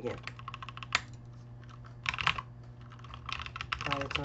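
Computer keyboard typing in short bursts of keystrokes, with one sharp click about a second in.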